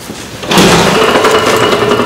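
A metal exit door with a push bar is shoved open about half a second in, and a loud, steady mechanical noise with a few held tones comes in at once and keeps going.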